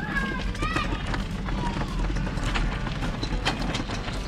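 A hand trolley loaded with stacked plastic folding tables rolling over gravel, a steady rumble with crunching footsteps.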